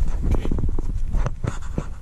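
Handling noise: a low rumbling rub with scattered small clicks and knocks as the camera is moved about and a hand works among the hoses and wiring.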